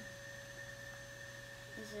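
Quiet room tone with a steady, unchanging electrical hum; a child's voice begins right at the end.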